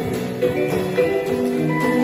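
Live keyboard-and-drums music: an electronic keyboard plays sustained chords and melody notes while a small drum kit keeps time with light cymbal and drum strokes.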